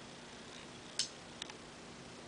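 Two small clicks of a plastic pill cutter being handled as a tablet is set in it, a sharper one about a second in and a fainter one just after.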